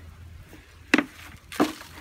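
Two short knocks, about two-thirds of a second apart, from a black plastic nursery pot and the tree's root ball being handled as the root ball slides free of the pot.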